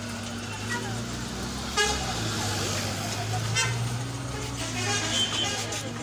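Two short vehicle horn toots, about two seconds in and again nearly two seconds later, over a steady low engine hum and the chatter of a street crowd.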